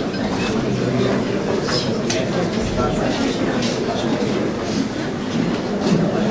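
Indoor audience applauding steadily with dense clapping, under a murmur of voices.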